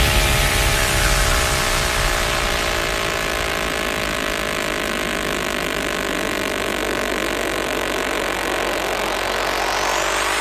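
Beatless breakdown in a Vinahouse dance mix: a sustained buzzy synth tone that dips slightly in pitch, holds, then sweeps upward near the end as a riser building toward the drop.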